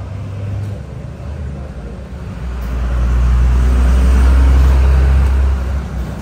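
A motor vehicle passing on the street: a deep engine rumble grows loud about halfway through, peaks, and fades near the end.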